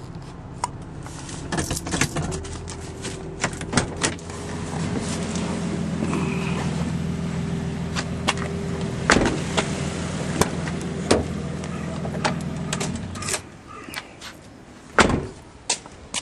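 The Nissan Elgrand's 3.5 V6 engine running with a steady hum while the van is parked, amid scattered clicks and knocks; the engine is switched off about thirteen seconds in. A single loud thump, like a car door shutting, follows a couple of seconds later.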